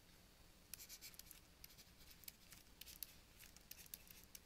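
Faint scratching of a pen on a writing surface, handwriting a word in short irregular strokes, starting a little under a second in.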